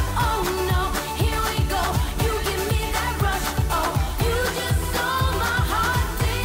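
Pop song with a female lead vocal sung into a handheld microphone over a steady drum beat and bass.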